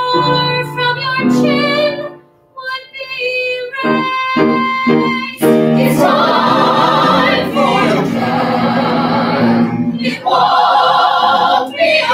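Live musical-theatre singing by the cast: sustained sung notes with short breaks at first, then louder, fuller singing with vibrato from about five and a half seconds in.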